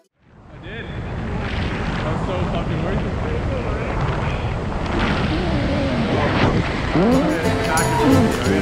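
Wind rushing over the camera microphone during a tandem parachute descent under canopy, with voices shouting over it. Music comes back in near the end.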